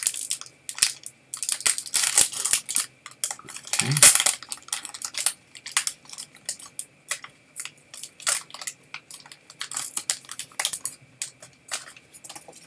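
Crinkling and tearing of a baseball card pack's wrapper, with cards handled and shuffled in the hands: a dense run of short, sharp crackles and clicks. A brief low vocal sound comes about four seconds in.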